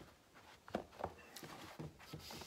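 Faint handling sounds of a tubeless road bike tire being worked onto its wheel rim by hand: rubber rubbing on the rim with a few short clicks in the second half.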